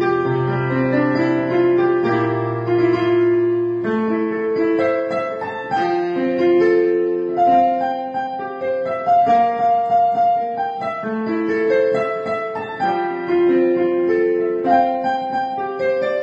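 Digital piano played with both hands: a slow melody over held chords, with low bass notes sustained for the first few seconds and the music then moving to a higher register.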